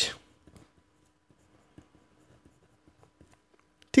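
Faint scratching and light ticking of a pen writing on paper, a few short strokes.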